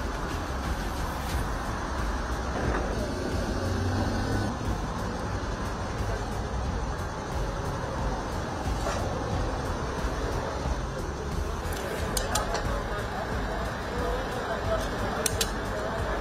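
Steady low rumble of vehicle engines and road traffic mixed with indistinct voices, with a few sharp clicks late on.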